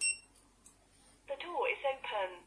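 A short high beep from a Hikvision intercom keypad module as the final hash key is pressed, then about a second later a recorded voice from the intercom's small speaker announcing that the door is open, confirming that the code was accepted.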